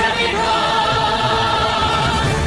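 Soundtrack music with a choir singing long, held notes.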